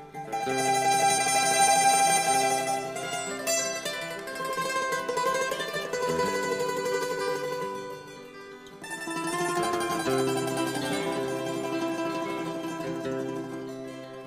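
Hungarian Romani folk music with plucked string instruments to the fore, playing in phrases; the music dips briefly about eight seconds in, then comes back up.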